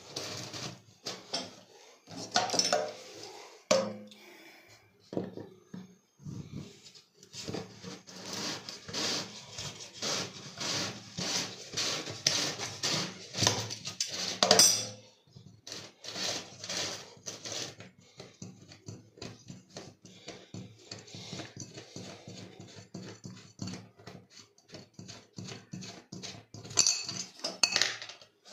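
Pliers and fingers turning the central screw of a stainless-steel kitchen sink strainer loose: a run of metal clicks and scrapes against the steel drain, with one louder clank about halfway through.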